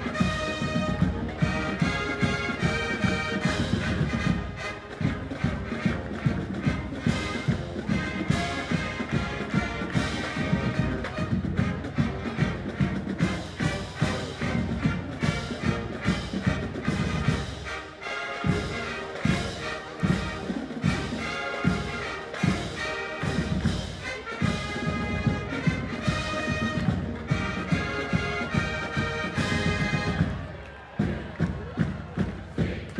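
University marching band playing an up-tempo tune: brass and saxophones over a steady drumbeat.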